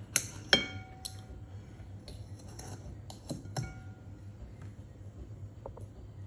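Metal fork and knife clinking against a ceramic bowl while a big pickle is cut, each clink ringing briefly. The two sharpest clinks come right at the start, with lighter taps about a second in and around three and a half seconds in.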